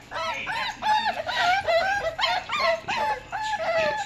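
Pit bull puppies whining and yelping to get out of the crate: a run of short, high cries, about three a second, each rising then falling in pitch.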